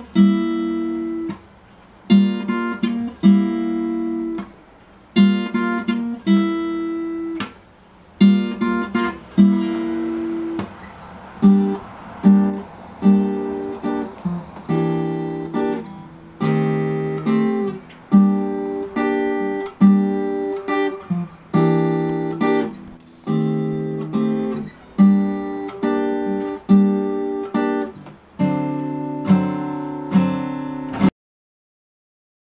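Acoustic guitar strumming chords. In the first several seconds single chords are struck and left to ring. After that the strumming turns busier and steadier, about two strokes a second.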